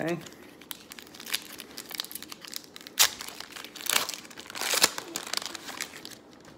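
Foil trading-card pack wrapper crinkling and tearing as it is opened by hand: an uneven run of crackly rustles, loudest about three seconds in and again a little before the end.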